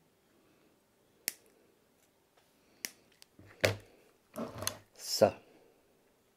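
Two sharp snips of small side cutters clipping the thin wire leads of a ceramic capacitor to length, about a second and a half apart. They are followed by a few louder short bursts of low muttered voice.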